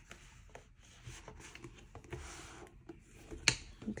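A thick paper notebook being slid and pressed into a pebbled leather B6 planner cover: soft rubbing and rustling of paper and leather with small taps. A single sharp click sounds near the end.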